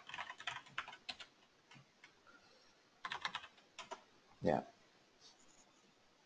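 Typing on a computer keyboard: a quick run of keystrokes in the first second or so, then a pause, then another short run about three seconds in and a few single keystrokes later.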